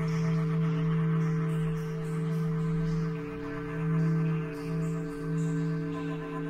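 Ambient meditation music built on a 444 Hz tone: a steady drone of several sustained tones that swells and eases gently, with no beat.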